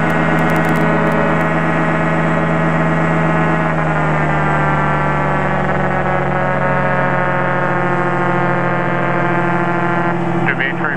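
Light-aircraft engine and propeller droning steadily in cruise flight, heard from the chase plane, with a slight shift in pitch about four seconds in.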